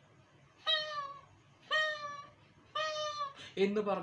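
A cat meowing three times, each call about half a second long and about a second apart.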